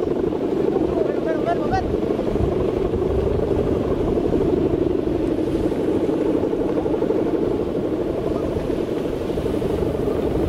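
Steady buzzing drone of a Balinese kite's guangan, the hummer bow strung across the kite's top, vibrating in the wind. A few brief high chirps come about a second in.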